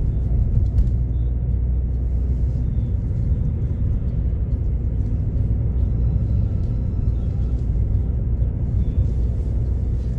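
Steady low rumble of a moving road vehicle.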